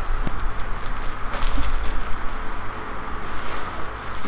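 Crinkling and rustling of the plastic wrapper of a sliced-bread packet being handled, with a few small clicks and knocks, over a low steady hum.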